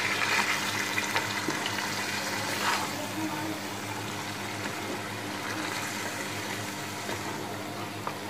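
Water rushing into and sloshing through a pot of potato-and-mince curry as it is stirred with a wooden spatula, louder for the first three seconds and then settling to a steadier, softer wash. A faint steady low hum runs beneath.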